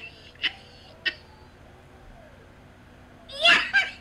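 A man laughing: two short breathy bursts in the first second, then a quieter stretch, then a louder burst of laughter about three and a half seconds in.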